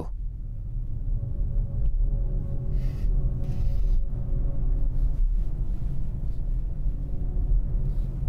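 Ambient electronic music, an electronic chorus of sustained held tones, playing through the BMW i7's cabin speakers as part of its relaxation-mode soundscape, over a steady low rumble.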